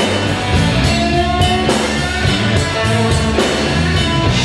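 Live rock band playing an instrumental passage: electric guitar and bass over a drum kit keeping a steady beat on the cymbals.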